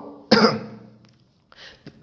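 A man coughs once, sharply, about a third of a second in, and the cough fades within about half a second.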